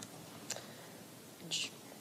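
A pause in speech: low room tone with a faint click about half a second in and a short breathy hiss, a speaker's intake of breath, about a second and a half in.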